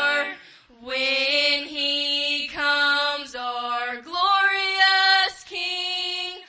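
A woman's voice singing unaccompanied, holding long, slow notes with a short pause for breath about half a second in.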